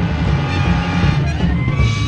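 High school jazz big band playing live: sustained full-band chords over bass and drums.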